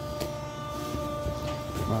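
Clothes and heavy jackets being shuffled and rustled by hand in a bin, faint scattered handling noises over a steady hum of several held tones.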